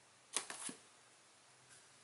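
A plastic-bagged comic book being set down flat: a quick cluster of sharp plastic slaps and crinkles about a third of a second in, over in under half a second.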